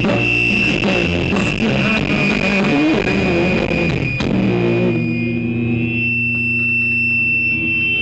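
Live grunge band playing electric guitars, bass and drums. About halfway through, the drums drop out and the guitars hold long ringing chords under a high steady whine.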